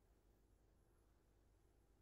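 Near silence: faint low hum and hiss of an open call line.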